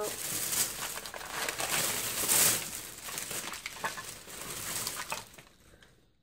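Crinkling and rustling of packaging being handled, with sharp crackles, continuous for about five and a half seconds before fading out.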